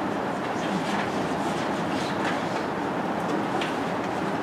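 Steady room noise in a meeting room, a constant hiss like ventilation, with a few faint clicks and small movement sounds.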